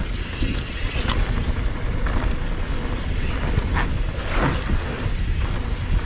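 Wind buffeting a helmet-mounted action-camera microphone as a mountain bike rolls fast down a dirt jump trail, with tyre noise on dirt and scattered clicks and knocks from the bike.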